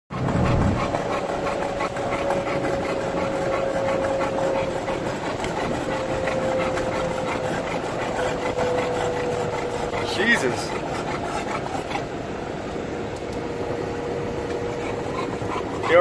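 Car air conditioning blaring inside a truck cab over the vehicle's running noise, with a faint hum that sinks slowly in pitch. An Olde English bulldog pants close by.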